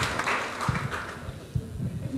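Congregation applause dying away over the first second, followed by a few low knocks and thumps.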